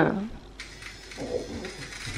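A man's short pained "oh", then a battery-powered nose-hair trimmer buzzing faintly inside his nostril as it tugs at the hairs.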